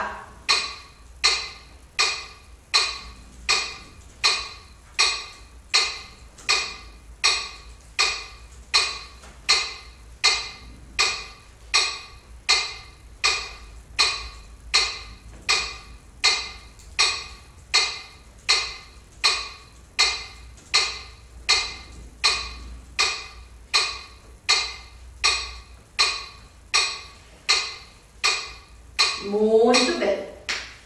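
Metronome ticking at 80 beats per minute, short sharp clicks a little over once a second, evenly spaced throughout. Each tick is the cue for the next change of arm position.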